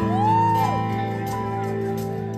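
Live band music: sustained keyboard chords, with a single pitched note that swoops up and falls away within the first second.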